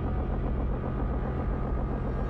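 A steady low mechanical rumble, a sound effect in an animated sci-fi soundtrack.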